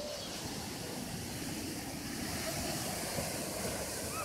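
Steady wash of sea surf breaking on the shore, mixed with wind.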